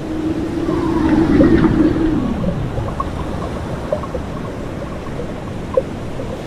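Designed water sound effects for an animated logo. A low tone holds and then glides downward about two seconds in, over a rushing, ocean-like wash, and small bubbly pops are scattered through the rest.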